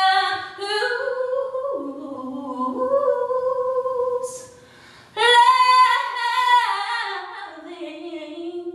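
A woman singing a cappella, one unaccompanied voice holding long notes that slide in pitch. After a short pause about four seconds in, she comes back louder on a high held note, then slides down into lower notes.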